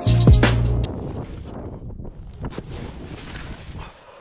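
Electronic music with a heavy beat cuts off about a second in. It gives way to a rushing, scraping noise of a snowboard and rider skidding through loose snow after an overshot landing, with wind buffeting a helmet-mounted camera's microphone.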